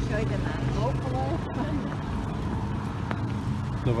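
A car driving slowly towards and past the microphone, its engine running at low revs with a steady low hum, with faint voices of people walking nearby.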